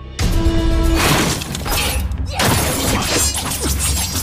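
Action-film fight soundtrack: a sudden loud crash with shattering just after the start, then another crash a little past the middle, over dramatic music.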